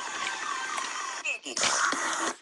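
Electronic remix playback from a DJ mixer: a repeating run of quick falling chirps, about three a second. About a second and a half in, a loud harsh noisy burst cuts in.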